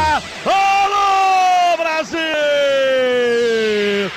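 Radio football commentator's drawn-out shouts in a goal call: two long held cries, each well over a second, slowly sliding down in pitch.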